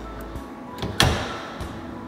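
A single sharp clack about a second in, a kitchen door being shut, over faint steady background music.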